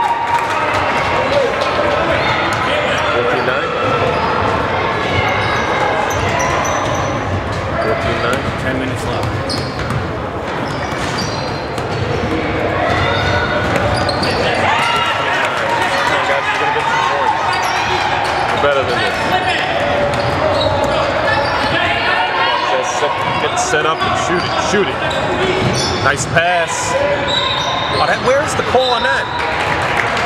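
Basketball game in progress: the ball bouncing on the court against a constant layer of overlapping voices from players and spectators.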